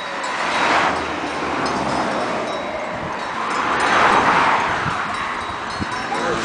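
Bells on a flock of grazing sheep tinkling faintly and irregularly, under a rushing noise that swells about a second in and again around four seconds in.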